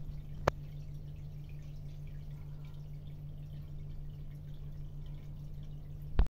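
Water dripping and trickling in a home aquarium over a steady low hum, with one sharp click about half a second in.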